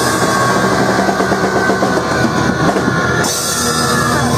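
Punk band playing live at full volume, drum kit to the fore, with a shift in the music a little past three seconds in.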